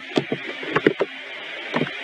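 Typing on a computer keyboard: a handful of irregular key clicks as a word is typed in.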